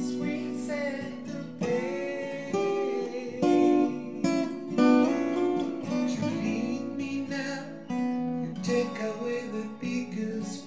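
Steel-string acoustic guitar fingerpicked: single plucked melody notes ringing out over held chords in an instrumental passage.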